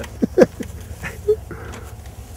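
A man laughing in a few short bursts, over a steady low rumble.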